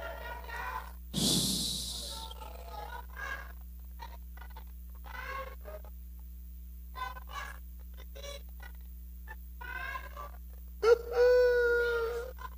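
A man's voice through a PA, weeping and praying in broken, wordless sounds and gasps. There is a loud rushing breath about a second in and a loud held cry near the end, over a steady electrical hum.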